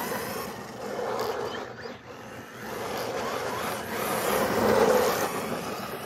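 Electric motor and drivetrain of a Redcat Volcano RC monster truck running on asphalt, with motor whine and tyre noise that swell to their loudest about four to five seconds in, then fade as the truck drives off.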